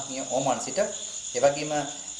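Night insects, crickets, chirping steadily at a high pitch, with a man's voice speaking over them in short phrases.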